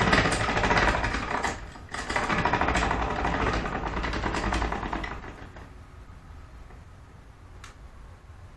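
Ratchet on a bow-tillering tree being worked in rapid clicks to pull the bowstring of a heavy horn-and-sinew bow further down, with a short break just before two seconds in. The clicking stops about five seconds in.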